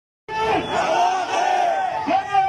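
A large crowd of protesters chanting loudly together, many male voices shouting a slogan. The sound cuts in abruptly about a quarter second in.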